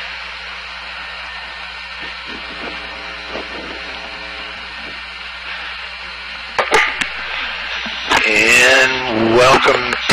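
A steady hiss with a low hum under it, faint murmured voices, a few sharp clicks about seven seconds in, then a man's voice over the radio intercom for the last two seconds.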